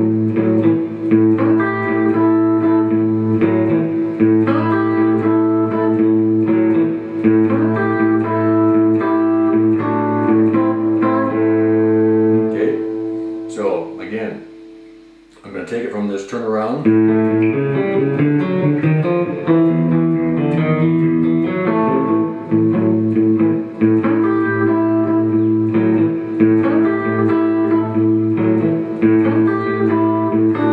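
Fender Stratocaster electric guitar played fingerstyle in a blues shuffle: the thumb keeps a steady bass line while the fingers pick a lead line over it. The playing breaks off briefly about halfway, then starts again.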